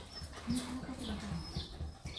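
A hound with a tennis ball in its mouth whining in a low, drawn-out voice, one long moan that falls away at the end, about half a second in. Short high chirps recur faintly behind it.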